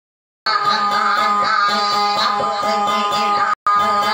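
A woman singing a dayunday song to her own plucked, steadily rhythmic acoustic guitar. The sound cuts out completely for about the first half second, and again for a moment near the end.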